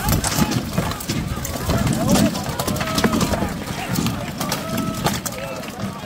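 Many sharp, overlapping clacks and knocks of rattan weapons striking shields and armor in an armored melee, with shouting voices over them.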